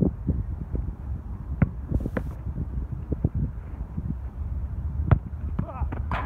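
Wind rumbling on the microphone, with a few sharp thuds of a football being struck in a shot-stopping drill, the loudest near the end.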